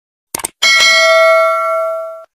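A short click, then about half a second in a single bell chime rings out and fades over about a second and a half: the notification-bell sound effect of a subscribe-button animation, played as the cursor clicks the bell icon.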